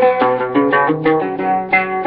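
Instrumental passage of a Sudanese song: a plucked string instrument playing a quick run of single notes, several a second.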